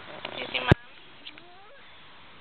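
A sharp knock of a phone being grabbed and handled, after a few short vocal sounds, then faint rising and falling little voice sounds from a small child.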